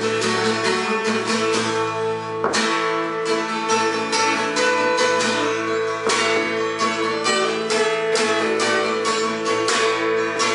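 Solo acoustic guitar playing an instrumental passage, with strummed and picked chords ringing out and a couple of harder strums.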